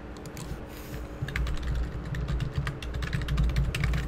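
Computer keyboard typing in quick runs of keystrokes, entering a username and password.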